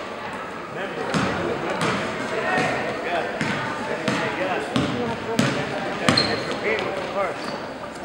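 Basketball dribbled on a gym floor: a steady rhythm of bounces, about three every two seconds, starting about a second in, over the chatter of people in the hall.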